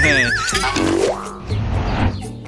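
Comedic cartoon sound effect: a high warbling tone sliding steadily downward, then a short rising slide about a second in, over background music, as the baggy trousers fall down.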